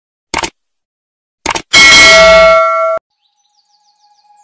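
Subscribe-button animation sound effect: two short clicks, then a bright bell ding that rings for about a second and cuts off suddenly.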